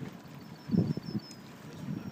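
A single short spoken word over light wind noise, with a faint run of quick high-pitched chirps in the middle.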